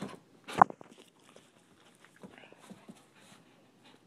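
Dog moving about and panting faintly, with one short, sharp sound about half a second in.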